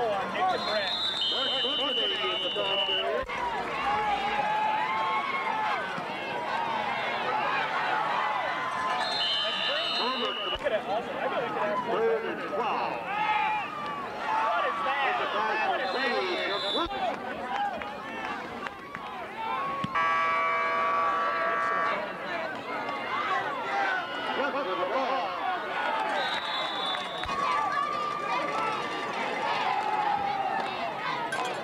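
Spectators near the microphone talking and calling out over one another, with short high referee's whistle blasts about a second in and three more times later. Midway a held tone sounds for about two seconds.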